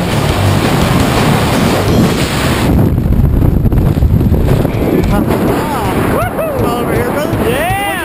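Freefall wind rushing loudly over a helmet-camera microphone, cutting down sharply about three seconds in as the parachute opens and the fall slows. In the last two seconds there are a few rising-and-falling whoops from a voice.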